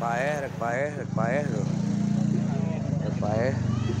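A small engine running steadily under people's voices. The voices are loudest in the first second and again about three seconds in.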